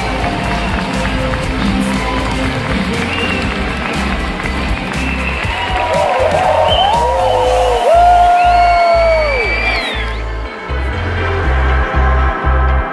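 Theatre audience applauding and cheering over music. A long held tone slides down about nine seconds in, and the crowd noise cuts off abruptly about ten seconds in while the music carries on.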